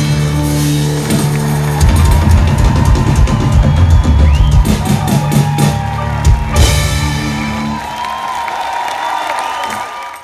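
A live pop-rock band ending a song: a held chord under busy drum fills. The sound thins out about eight seconds in and fades away at the very end.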